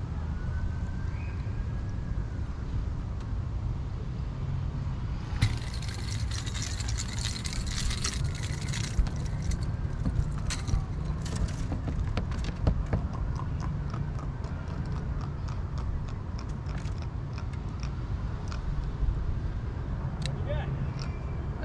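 A freshly landed jack being handled on a bass boat's deck: a dense run of clicking and rattling from about five to nine seconds in, then scattered clicks, over a steady low rumble.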